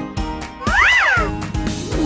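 A single high-pitched, meow-like cry that rises and then falls, heard briefly about a second in over light children's background music.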